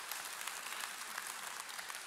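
Congregation applauding: many hands clapping together in a steady patter.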